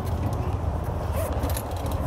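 A clip-in pontoon boat fender being pulled from its rail holder, giving a few faint clicks and rattles of plastic against the stainless rail, over a steady low outdoor rumble.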